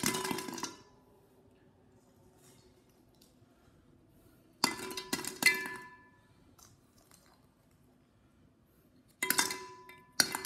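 Christmas ball ornaments dropped into a tall glass vase, clinking against the glass and each other. There are three bursts of clinks, at the start, about halfway through and near the end, and each leaves a brief ringing tone from the vase.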